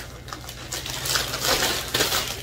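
Rustling of clothes being handled, a soft crinkle that swells in the middle, with a few faint clicks.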